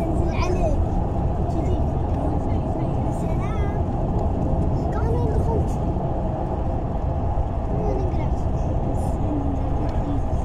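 Steady road and engine rumble inside a vehicle moving at highway speed, with faint voices talking under it.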